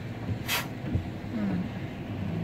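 Steady road and engine noise inside a moving car, with one short sharp hiss about a quarter of the way in and a faint knock near the middle.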